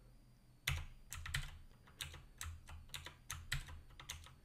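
Computer keyboard keys being pressed in an irregular run of about a dozen short clicks, starting just under a second in, as values are typed into a spreadsheet-style form.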